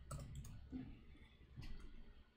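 Faint computer keyboard keystrokes: a few separate clicks, with a quick cluster near the end, as a line of code is typed.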